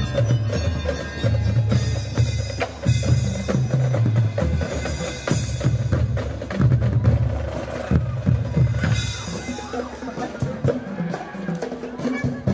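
Marching band percussion playing live: bass drums and snare drums beating a rhythm together with mallet keyboards. The heavy bass-drum hits ease off about nine or ten seconds in, leaving the lighter drums and mallet notes.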